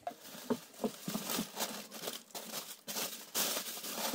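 Paper and plastic packing rustling and crinkling as a hand rummages in a cardboard parcel and draws out a paper packing slip, in short, irregular rustles that get a little louder near the end.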